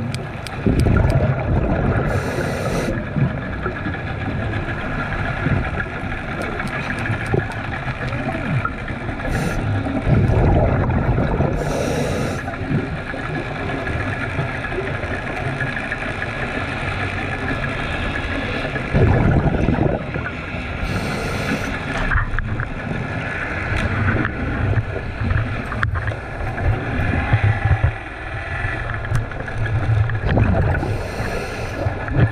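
Muffled underwater sound through a camera housing: a steady low rumble, with louder bursts of bubbling about every nine seconds and short hisses in between, typical of scuba breathing and exhaled bubbles.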